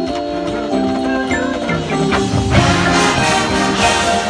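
Marching band playing live in a stadium: held wind chords that change every fraction of a second over mallet keyboards from the front ensemble. About two and a half seconds in, the percussion hits and the band gets louder and fuller, with another hit near the end.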